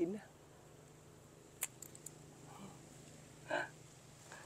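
A single sharp snip of scissors cutting through the stem of a grape bunch about a second and a half in, followed by a couple of fainter clicks.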